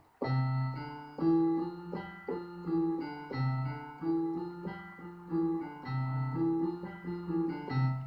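A keyboard in a piano voice is played slowly. Low bass notes return every few seconds under groups of higher notes sounding together, and each note rings on until the next one.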